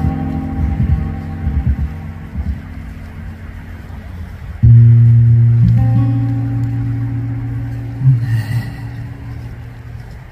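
Acoustic guitar played solo: picked notes ring and fade, then about halfway a loud low chord is struck and left to ring, slowly dying away, with a few more notes picked near the end.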